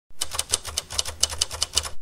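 Typewriter keys striking in a quick run, about eight clacks a second, over a low hum.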